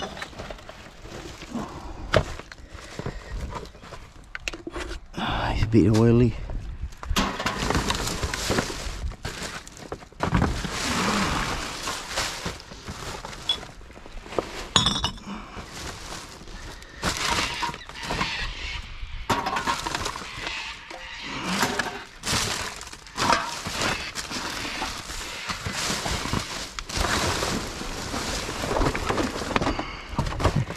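Plastic rubbish bags and loose trash rustling and crackling as they are rummaged through by hand in a dumpster, with irregular clattering and occasional clinks.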